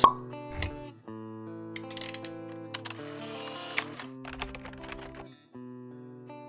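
Short intro jingle of held musical notes with clicks and swishing effects laid over it, opening with a sharp hit.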